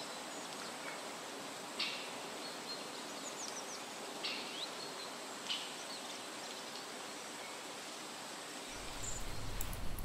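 Quiet outdoor ambience: a steady hiss with a few short, high bird chirps, about two, four and five and a half seconds in.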